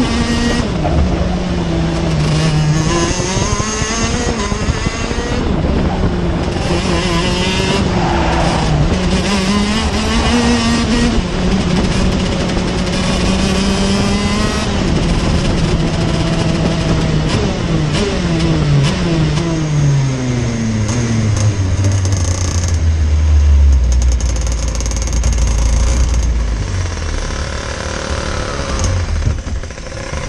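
TM KZ10B 125 cc two-stroke shifter kart engine heard onboard at race speed, its revs rising and falling through the corners. In the second half the pitch falls steadily as the kart slows, settling to a low, steady note near the end.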